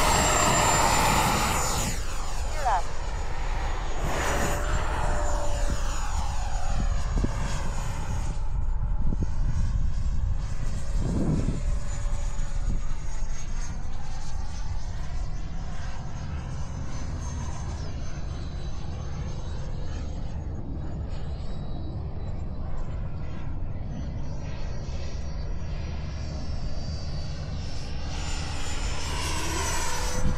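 Electric ducted-fan whine of a Freewing F-22A Raptor 90mm RC jet, loudest early on as it takes off and climbs away. The whine slowly falls in pitch and level, then rises again near the end as the jet comes back past. Strong wind rumbles on the microphone throughout.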